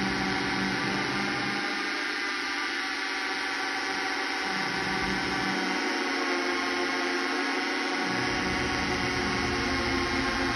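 Homemade nine-oscillator transistor drone synth sounding a dense, buzzing chord of many steady tones, its pitches shifting slightly as the tuning knobs are turned. Its low buzz drops out twice, for two to three seconds each time.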